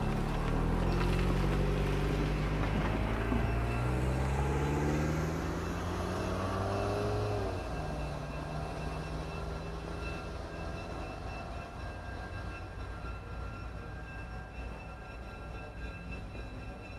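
Passenger train running past and moving away on the rails. A low drone slides down in pitch for the first several seconds and stops abruptly, leaving a steady rumble that slowly fades.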